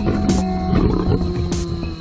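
A big cat growling and roaring over background music with sustained notes.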